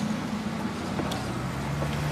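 A car's engine running as it drives past close by, its low hum coming up from about a second in.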